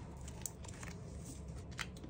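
Faint rustle and a few light clicks of clear plastic photocard binder sleeves being handled, with a sleeve page turned near the end.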